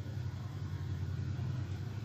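A steady low-pitched hum with a faint even background hiss and no speech: room background noise.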